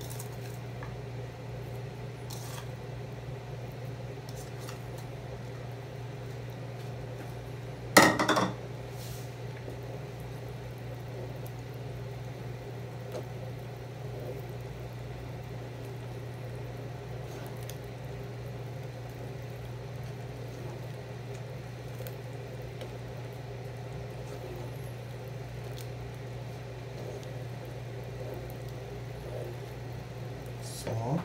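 Wooden spoon stirring thick milky soup in a metal pot, with a sharp knock of spoon against pot about eight seconds in and a few faint clicks, over a steady low hum.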